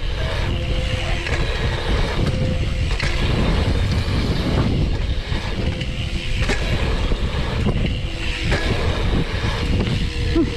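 Wind buffeting the microphone of a head-mounted camera while riding a BMX bike down a dirt jump line, with tyres rolling on packed dirt. A few sharp knocks come through, at about three seconds in and twice between six and eight seconds, from landings.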